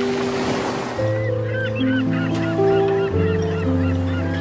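A flock of birds calling in many short, overlapping calls from about a second in, over piano and orchestral music. Waves wash on a pebble beach in the first second.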